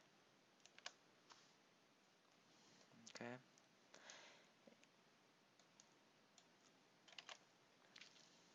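Faint, scattered computer keyboard key clicks, a few isolated presses with a short burst near the end, with near silence between them.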